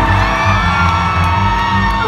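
Hard rock band playing loudly live, with drums keeping a steady beat under electric guitars and a held, rising high line, heard through a phone's microphone in the crowd.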